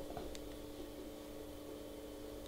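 Quiet room tone with a steady low electrical hum, and one faint short click about a third of a second in from a small vape battery being handled.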